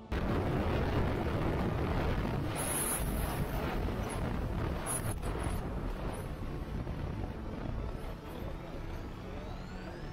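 Heavy wind and riding noise from a Yamaha R15M motorcycle at speed, cutting in suddenly and easing gradually as the bike slows from about 116 km/h.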